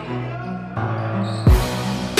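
Background music: steady held synth and bass notes, with a heavy, deep kick drum and a bright cymbal-like crash coming in about one and a half seconds in.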